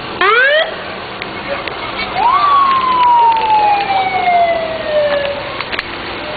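Emergency vehicle siren: a short rising whoop just after the start, then a tone that rises briefly about two seconds in and falls slowly for about three seconds.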